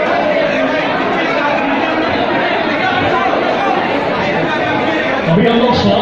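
Hubbub of many people talking at once in a large hall, overlapping voices with no single clear speaker. Near the end one voice rises above the rest.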